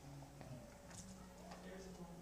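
Near silence: faint, distant murmured voices with a couple of light clicks.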